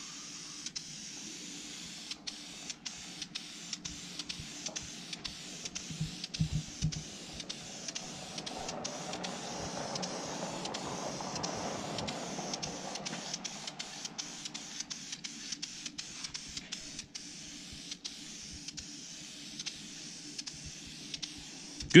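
Dupli-Color metallic green aerosol spray paint hissing steadily from the can's nozzle as it coats a steel sign, broken by many brief dips. The hiss grows fuller around the middle.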